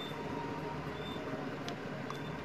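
Steady low background hum, with faint short high chirps about once a second and a single light click near the end.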